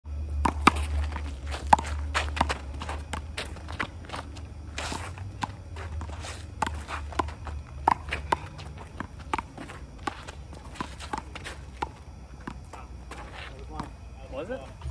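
One-wall handball rally: the rubber ball is slapped by gloved hands and smacks off the concrete wall and court in a run of sharp, irregular smacks, with sneakers scuffing and stepping on the asphalt. A low steady rumble runs underneath.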